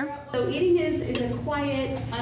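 Forks clinking on ceramic plates, a few sharp clinks, with people's voices talking over them.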